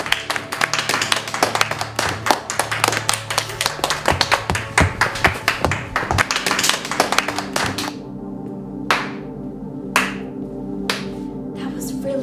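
Fast hand clapping mixed with the tapping feet of Irish step dancing, dense for about eight seconds, then three single strikes about a second apart.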